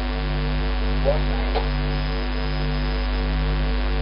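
Steady electrical mains hum in the broadcast audio feed, with one low band wavering slowly in level.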